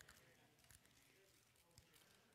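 Near silence: room tone, with a couple of faint small clicks.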